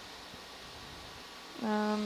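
Low steady background hiss, then about one and a half seconds in a person's voice holds one flat, drawn-out vowel, like a hesitant 'uhh', for about half a second.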